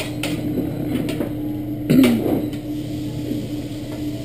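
Metal spatula clicking and scraping on a hibachi griddle as noodles and vegetables are tossed, with a louder knock about two seconds in, over a steady low hum.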